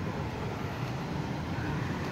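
Steady low noise of road traffic, motor vehicles running along a street.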